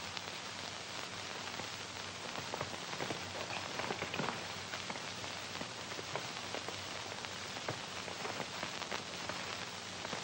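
Steady hiss and crackle from an old film soundtrack, with faint scattered clicks and a low hum underneath, and no music or dialogue.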